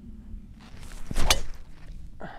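Golf driver swung at a teed ball: a short rising swish of the clubhead, then one sharp crack as it strikes the ball a little past halfway.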